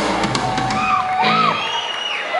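Live rock band playing, with the audience whooping and shouting over it. The band's low end stops about a second in, leaving the whoops and shouts.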